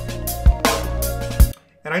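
Electronic track playing back from the DAW, its melody generated by Melody Sauce 2: kick drum hits over a sustained bass, synth lines and hi-hats, with reverb and delay. The music cuts off suddenly about a second and a half in when playback is stopped.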